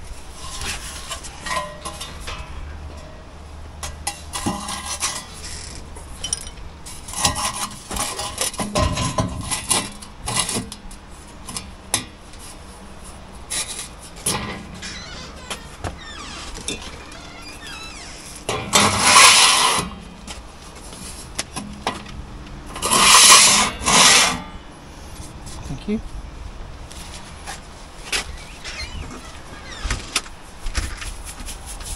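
Knocks, taps and rubbing of a steel angle-iron lintel and cavity tray being handled and fitted into a cut-out in brickwork. Two loud scraping noises, each about a second long, come in the second half.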